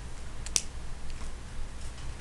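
Quiet room tone with a steady low hum, and one sharp click about half a second in.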